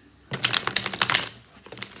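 A deck of tarot cards being shuffled by hand: a quick, dense run of crisp papery clicks lasting about a second.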